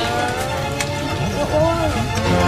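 A voice with a long, slowly sliding pitch, over music.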